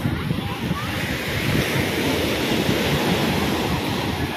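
Surf washing onto a sandy beach as a steady rush, with wind buffeting the microphone.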